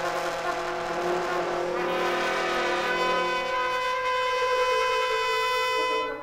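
Modernist wind-ensemble music: a dense, dissonant chord of brass and woodwinds held at many pitches at once, with a rough hissing high layer at first. The lowest note drops out about halfway through, and the chord breaks off at the very end.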